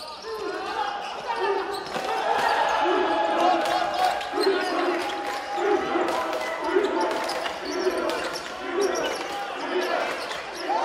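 A basketball bouncing on a hardwood gym floor in a large hall, about once a second as it is dribbled, amid players' sneaker squeaks and voices.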